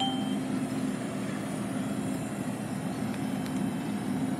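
A short electronic beep from a Metro TAP ticket vending machine right at the start, as its screen moves to the payment prompt, over a steady low mechanical drone.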